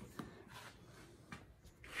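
Mostly quiet, with a few faint clicks and rustles from the camera being handled and moved.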